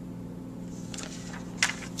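Steady low electrical hum of the room background, with faint brief rustles of paper and cardboard being handled about one and one and a half seconds in.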